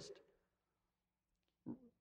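Near silence in a pause in a man's speech: his last word fades out at the start, and a brief vocal sound comes near the end.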